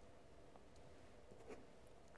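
Near silence: faint room tone, with one small faint click about one and a half seconds in.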